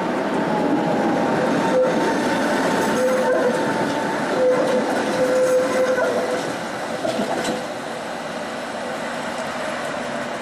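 A Tatra T3 tram running past close by on street track, with wheels rumbling on the rails and a steady whine over them. The sound is loudest in the middle and fades after about seven seconds as the tram moves away.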